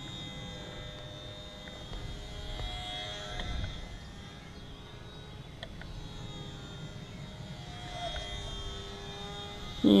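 HobbyZone Sport Cub S RC plane in flight, its small electric motor and propeller giving a steady whine that shifts in pitch a couple of times.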